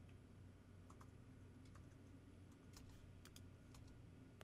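Near silence: faint room hum with a few scattered, faint clicks of computer keyboard keys.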